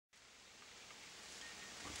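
Near silence: faint outdoor background hiss, fading up from nothing.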